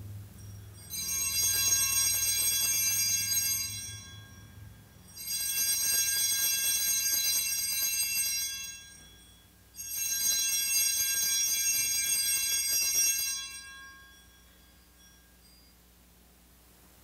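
Altar bells (Sanctus bells) rung three times for the elevation of the chalice at the consecration, each ringing a bright, high jingle lasting about three and a half seconds, with short pauses between.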